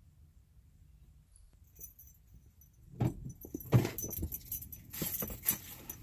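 A bunch of car keys jangling, with irregular knocks and rustling, starting suddenly about three seconds in after a near-quiet start.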